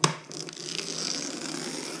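Packing tape being peeled off a cardboard box: a sharp snap as it starts, then a steady tearing noise for about a second and a half.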